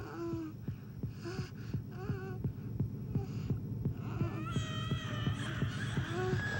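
Film soundtrack: a fast, even heartbeat-like pulse with short, wavering whimpering cries over it, joined about four seconds in by a higher, sustained wavering tone.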